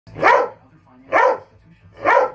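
Rottweiler barking twice, about a second apart.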